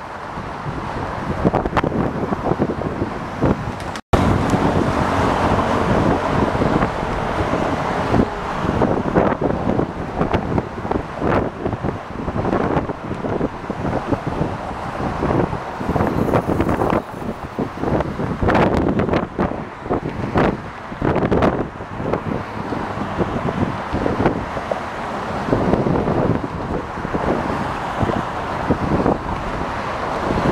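Steady road-traffic noise from cars passing in the lanes close beside, mixed with wind buffeting the microphone in frequent gusts. The sound cuts out for an instant about four seconds in.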